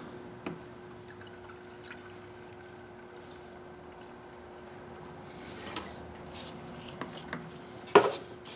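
Antifreeze coolant being poured from a plastic jug into a car's coolant expansion tank, heard as a faint steady pour. A few light clicks come in the second half.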